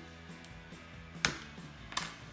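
Soft background music with a few sharp clicks of plastic LEGO bricks being pried apart, the loudest about a second and a quarter in.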